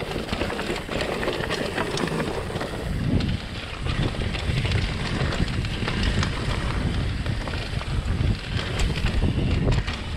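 Mountain bike rolling fast down a dirt and rock singletrack: tyres on the trail, with the bike clicking and creaking over bumps and wind buffeting the microphone.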